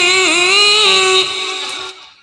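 Gending (gamelan song) with a female singer holding one long wavering note, which fades away in the second half.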